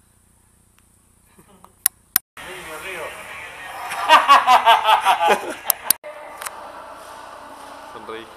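Near silence, then a couple of sharp clicks, then a voice that breaks into a burst of laughter: rapid, evenly spaced 'ha-ha' pulses lasting about a second and a half, followed by a few more clicks.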